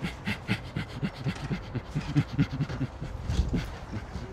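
A man imitating a chimpanzee with rapid, breathy panting grunts, about four or five a second.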